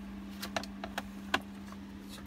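Several short clicks and knocks, the loudest about a second and a half in, as an electronic torque wrench is handled and set back into its carry case, over a steady low hum.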